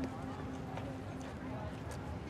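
Outdoor school-yard ambience: indistinct chatter of students and scattered footsteps, under a held low musical note that breaks off and resumes.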